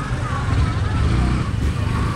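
Motorcycle engine running at low speed in slow, crowded street traffic, with a steady low rumble, and the faint voices of people close by.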